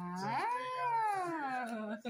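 One long drawn-out vocal call from a person, rising in pitch for about half a second and then sliding slowly down until the end.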